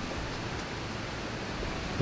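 Steady background hiss with no distinct event.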